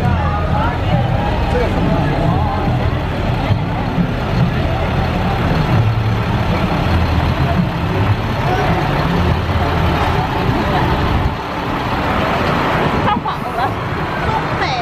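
Diesel engine of a Peterbilt truck running at low speed, a low rumble that shifts in pitch and drops away about eleven seconds in.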